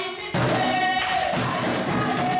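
A group of voices singing together in chorus, coming in suddenly about a third of a second in and holding long notes.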